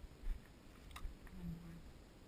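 Soft low thumps and a click from footsteps and handling of a body-worn camera. A brief hummed 'mm' from a voice comes just past halfway.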